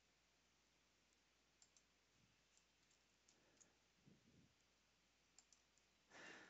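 Near silence, with a few faint clicks from a computer keyboard and mouse.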